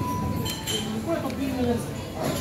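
A light clink of tableware with a short ringing tone about half a second in, over indistinct voices talking in a restaurant.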